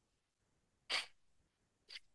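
Two short breath noises from a man, a sharp one about a second in and a fainter one near the end, without any words.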